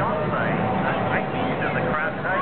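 Several people talking at once over the steady low drone of a helicopter in flight.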